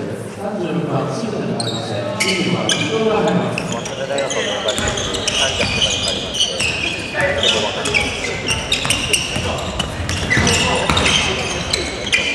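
Basketball game sounds in a gym: a ball bouncing on the hardwood floor among many short knocks, with players' and benches' voices calling out and brief high-pitched sneaker squeaks, all echoing in the large hall.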